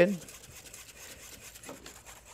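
Wire whisk scraping faintly against a fine double-mesh strainer as flour paste and beef stock are worked through it to thicken the stew.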